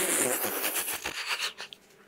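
A man's breathy, mostly voiceless laughter in quick short bursts of breath, fading out after about a second and a half.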